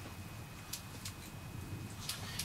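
Faint clicks and handling of a small ice-fishing reel as a hooked bluegill is wound up through the hole, over a low steady rumble.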